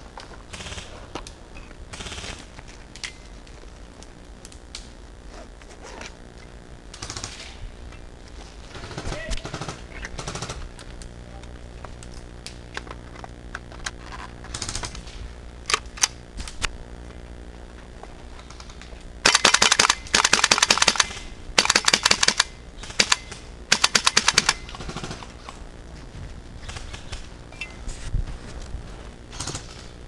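Airsoft rifle firing four or five short full-auto bursts of rapid sharp clicks, close by, bunched into about five seconds a little past the middle.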